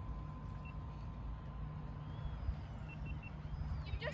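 Outdoor background noise: a steady low rumble, with a faint steady tone and a few brief, faint high chirps.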